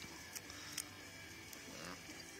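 Quiet handling of wires and a plastic window-switch connector, with two faint small clicks about half a second apart.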